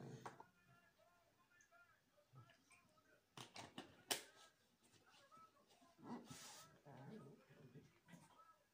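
Very quiet room with faint, distant speech, broken by a few sharp clicks from handling a small container about three and a half to four seconds in, and a short hiss about six seconds in.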